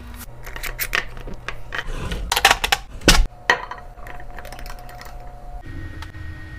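Containers and lids being handled: a run of clicks, taps and clatters, loudest around two to three and a half seconds in, then only a faint steady hum.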